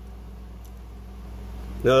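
Steady low hum of room tone with no distinct handling sounds, then a man's voice begins near the end.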